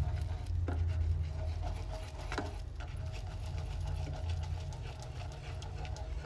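Wooden spatula pressing and scraping through melting sugar in a nonstick pan, crushing the sugar lumps, with a couple of sharp knocks of the spatula against the pan. A steady low hum runs underneath.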